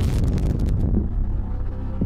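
Low rumble of wind and road noise from a car at motorway speed, with music underneath. The high rushing hiss fades away about a second in.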